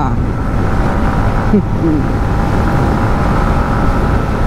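Wind rushing over the microphone with the steady drone of a Yamaha MT-15's 155 cc single-cylinder engine, cruising in sixth gear at about 80–85 km/h.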